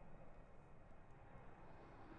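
Near silence: faint, even outdoor background noise with no distinct sound events.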